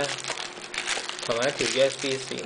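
Packaging being handled in a gadget's box: paper leaflets rustling and plastic wrap crinkling, in quick irregular crackles for the first second or so.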